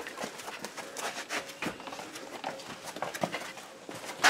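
Footsteps scuffing and knocking irregularly on a rocky cave floor as people walk single file through a narrow passage.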